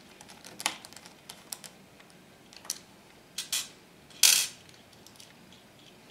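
Hand screwdriver driving mounting screws into a hard drive in a NAS drive bay: a scatter of small, quiet metallic clicks and ticks, with one louder short rasp a little past four seconds in.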